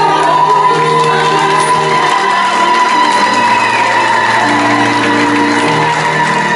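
Live song: a woman's voice holding one long high note over sustained keyboard chords.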